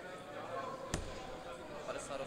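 A steel-tip dart striking a Winmau Blade bristle dartboard: a single short thud about a second in.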